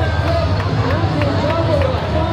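A voice with long, curving pitch glides over music with a steady low bass, and a few faint ticks in the second half.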